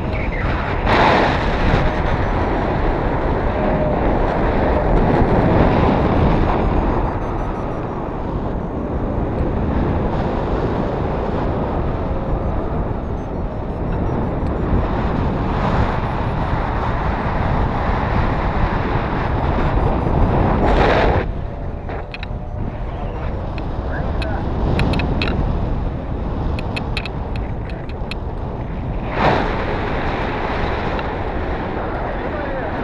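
Wind rushing over an action camera's microphone in flight under a tandem paraglider, a steady rough rush with three brief louder gusts: near the start, about two-thirds through, and near the end.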